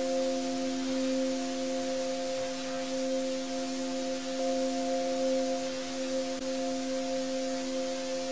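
Ambient background music: a drone of several steady held tones over a soft hiss, with a slight shift in the chord about a second in and again about halfway through.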